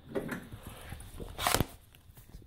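Fairly quiet, with a single brief knock or rustle about one and a half seconds in.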